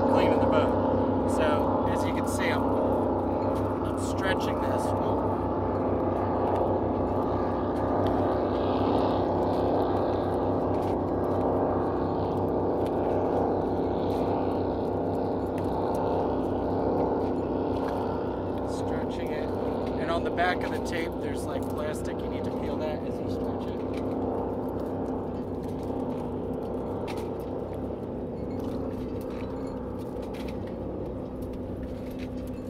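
A powerboat's engine droning steadily and slowly fading away. Light clicks and rustles of plastic tubing being handled come near the start and again about two-thirds of the way through.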